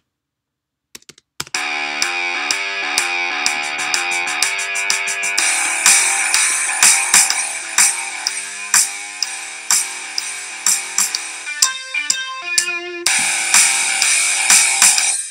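A multitrack rock project playing back from Logic Pro 9: a sampled electric guitar part over bass and a drum kit, starting about a second and a half in, with the drums getting heavier after about five seconds and a short break near the end. It is playing a decibel quieter than before, so the master output peaks just under clipping, at −0.4 dB.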